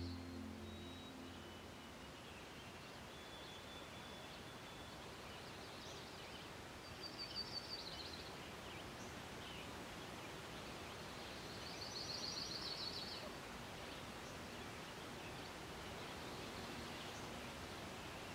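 Faint natural ambience: a steady soft hiss with scattered bird calls, including two short rapid high trills about seven and twelve seconds in.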